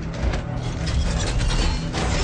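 Movie sound effects of a giant robot's machinery: rapid mechanical clicks and ratcheting over a low rumble, with dramatic film music underneath. The clicks grow dense about half a second in.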